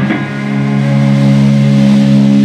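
Electric guitars and bass guitar holding one chord and letting it ring, the chord swelling slightly and staying steady.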